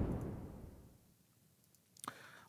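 The tail of a whoosh transition sound effect fading away over the first second, then near silence.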